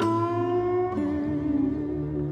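Film score on slide guitar: a long note struck and left to ring, bending slightly upward, then a lower note about a second in over a low sustained bass note.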